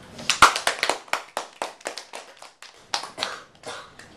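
A small group applauding, with separate hand claps coming at an uneven pace.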